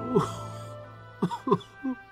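A person sobbing in four short, falling, breathy gasps over a soft, held music pad. It is a mourning sound effect of weeping.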